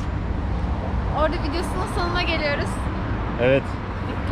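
Short bits of a man's and a woman's voices, with a brief louder vocal sound near the end, over a steady low hum of city traffic.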